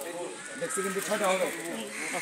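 Background talk of several voices, with no clear words.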